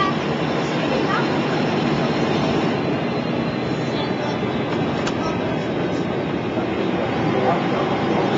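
DAF SB220 single-deck bus with Optare Delta body heard from inside the passenger saloon while under way: the diesel engine running steadily under load, with road and body noise.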